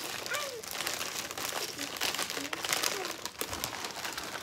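Plastic chip bag crinkling in the hands, in a run of irregular crackles as it is pulled open and handled.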